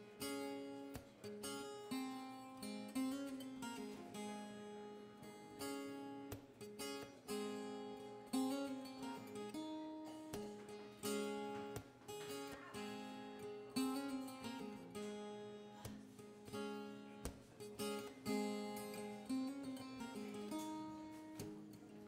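Acoustic guitar playing a song's instrumental intro, chords picked and strummed in a steady, repeating pattern with the notes left ringing.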